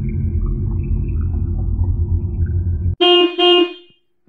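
A low, steady rumble cuts off abruptly about three seconds in. A car horn then gives two short honks.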